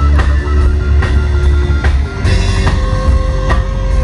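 Live rock band playing: electric guitars and heavy bass over a drum kit keeping a steady beat. A long held note comes in about two-thirds of the way through.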